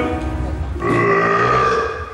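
A performer's exaggerated comic burps: a short, rough one, then a longer, croaky one with a pitch to it that stops just before the end.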